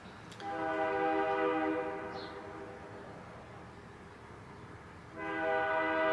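Train horn sounding two long blasts, each a chord of several steady notes: the first lasts about two seconds and fades, the second starts about five seconds in and is still sounding at the end.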